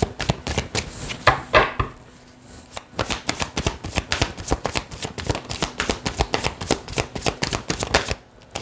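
A tarot deck being shuffled hand over hand: a quick, even patter of cards slapping together, about five a second. There is a louder flurry about a second and a half in and a brief lull just after two seconds.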